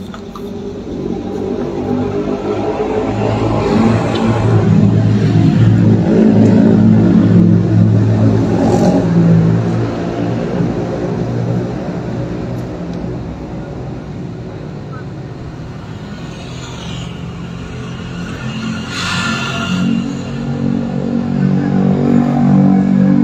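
A car engine running close by, growing louder over the first several seconds, then easing off and rising again near the end.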